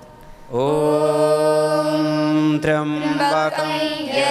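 A Sanskrit Vedic mantra chanted in unison by a man and a group of children. About half a second in, a long syllable is held on one steady note; near the three-second mark the chant moves on to shorter, changing syllables.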